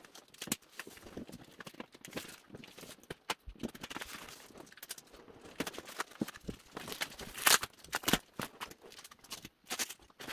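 Cardboard box and packing tape being handled: irregular crackling, rustling and scraping as the tape is pulled away and the box is worked loose, with a few sharper knocks of the cardboard, the loudest about seven and a half and eight seconds in.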